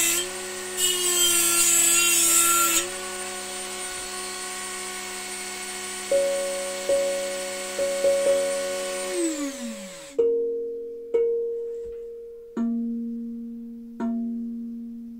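Electric rotary tool grinding a tongue of a steel tank drum made from a gas cylinder: a high motor whine with harsh metal-grinding noise, the grinding stopping about three seconds in while the motor runs on, then winding down in pitch about nine seconds in. From about six seconds in the tongues are tapped with a mallet, ringing out clear pitched notes, a quick cluster and then three single strikes, the last one lower, checking pitch while fine-tuning the drum by grinding metal off the tongues.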